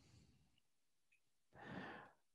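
Near silence, then a person's soft breath out, a sigh, about a second and a half in, during a pause to think.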